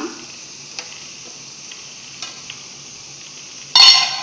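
Water boiling in a steel pot of noodles, a faint steady hiss. Near the end a glass pot lid with a steel rim is set on the pot with a loud, ringing metallic clatter.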